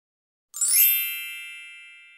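A single bright chime sound effect, starting about half a second in and ringing away slowly in a high shimmer.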